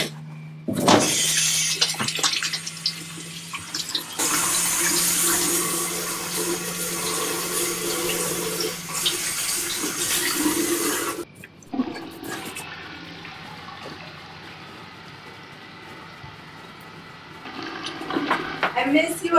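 Toilet flushing: a loud rush of water starts suddenly about a second in and runs for about ten seconds, then drops abruptly to the quieter steady hiss of the tank refilling.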